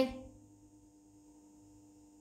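Near silence: a faint steady hum of room tone, just after a spoken word fades out at the start.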